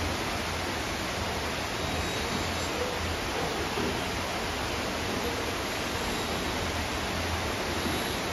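Steady rain falling, an even hiss with no breaks.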